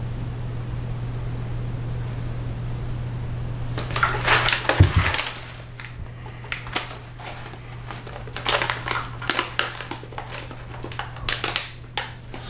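A Mylar food-storage bag crinkling sharply and irregularly as it is handled and heat-sealed with a clothes iron. The crinkling starts about four seconds in, with a low thump just after, over a steady low hum.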